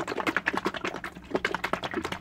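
Bottle of acrylic paint mixed with Floetrol and water, shaken hard by hand: liquid sloshing and knocking inside in quick, irregular strokes. By its sound and feel the mix is judged thin enough.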